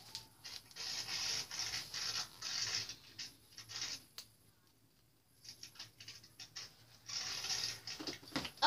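Scratchy rustling and scraping from things being handled and moved right next to the microphone, in two stretches with a quieter pause between them.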